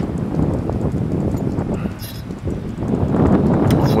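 Gusty wind buffeting the microphone, a rough low rumble that swells and eases, dipping about halfway through.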